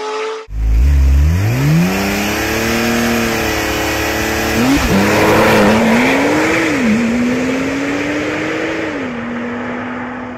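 Porsche 911's flat-six launching hard from a standstill under launch control and accelerating away. The engine note climbs steeply through first gear, then drops with three quick upshifts, and fades as the car pulls away.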